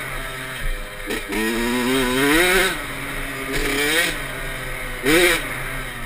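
Kawasaki KX65's small single-cylinder two-stroke engine revving on a trail ride, climbing in pitch and falling back several times as the throttle is worked and released, with a short sharp rev about five seconds in that is the loudest moment.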